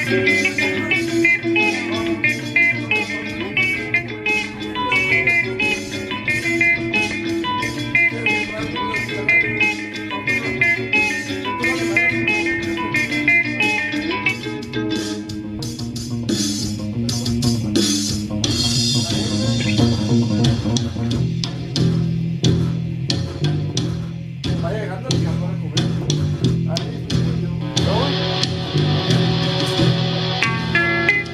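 A post-rock duo playing live: an electric guitar and a bass guitar through amplifiers, over a steady programmed beat. The guitar's ringing high notes run through the first half. After that, a louder, repeating low bass figure carries the music.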